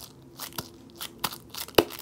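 A sticky homemade squishy fidget squeezed between the palms, giving about three sharp crackling clicks a little over half a second apart.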